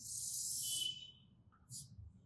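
Chalk scraping along a blackboard as a straight axis line is drawn: one stroke lasting about a second with a thin squeal near its end, then a second, shorter stroke near the end.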